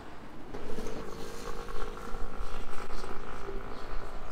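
A motor vehicle running close by on a city street, a steady humming tone that comes in about half a second in, over traffic and street noise.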